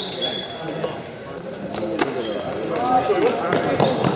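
Trainers squeaking in short high chirps on a sports-hall floor, with a few footfalls and players' voices echoing in the hall; the voices get louder near the end.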